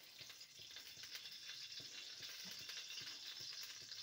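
Oil sizzling faintly in a steel kadhai on a gas stove: a steady high hiss with small scattered crackles.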